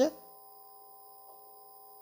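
The tail of a man's word, then a faint, steady electrical hum made of several held tones, coming through the amplified handheld-microphone system.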